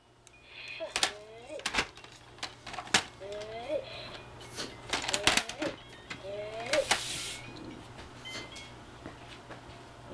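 Hard plastic toys and bins knocking and clattering as a toddler rummages through a plastic toy storage organizer: a string of sharp knocks spread through the clip. Short rising vocal sounds from the child come in between.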